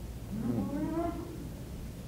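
A faint, distant voice, one drawn-out vocal sound about a second long in the middle of the pause.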